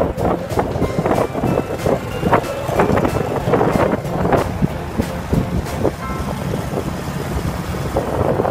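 Motorbike riding noise heard from the back of a moving scooter: wind buffeting the phone microphone in irregular gusts over the running engine, with music faintly underneath.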